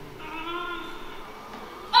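A performer's voice on stage: one drawn-out vocal sound about a second long, its pitch held and wavering slightly, without clear words.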